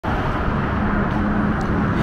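Road traffic noise: a steady rush of passing vehicles, with a low engine hum held for about a second in the middle.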